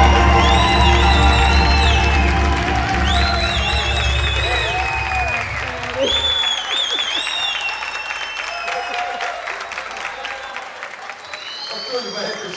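A live samba band finishing a song, its low drum and bass ending about six seconds in, while the audience applauds and cheers. The applause and crowd noise then fade away.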